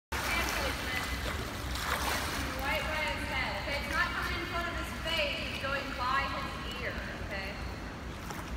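Water splashing from a swimmer's kick and stroke into a turn, then high-pitched chatter from young swimmers standing in the pool, over the lapping water.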